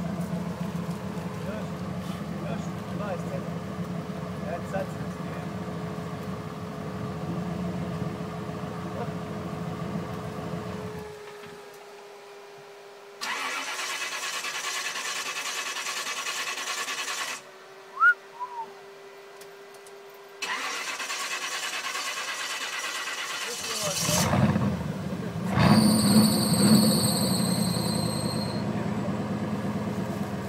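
Modified Jeep Wrangler's engine running steadily, then cutting out about a third of the way in. After a stretch without it, the engine starts and runs again about two-thirds through, with a high whine over it near the end.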